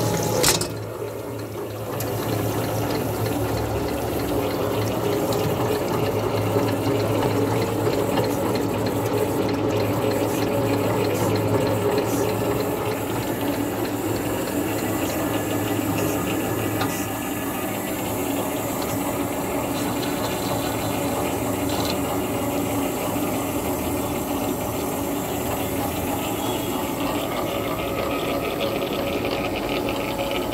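Bar thread cutting machine running steadily: motor hum with cutting coolant pouring and splashing over the threading die head.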